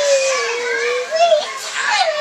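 A young child's wordless vocalising: a long, high-pitched drawn-out sound sliding slowly down in pitch that stops about a second in, then a short rising-and-falling call and another call starting near the end.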